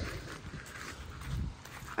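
Faint footsteps on gravel, with a low rumble of wind on the microphone.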